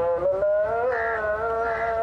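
Music: a voice singing long held notes, with a short slide in pitch about half a second in.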